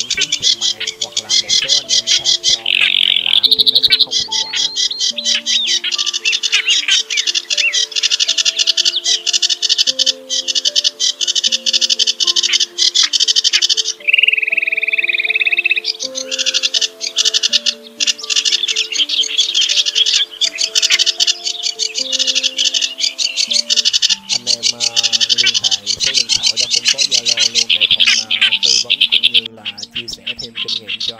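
Bird-lure recording of songbirds calling in a dense, rapid chatter of chips, with a different gliding call about halfway through. Underneath runs background music of slow, held notes.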